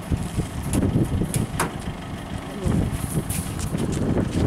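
Wire cage trap rattling and clinking as it is handled and lifted off a pickup's tailgate, with a few sharp metallic clicks, over a low steady rumble.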